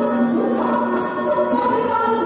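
Dhadi music: voices singing together over sarangi, with dhadd hand drums beating quickly, about four strokes a second, that die away around halfway.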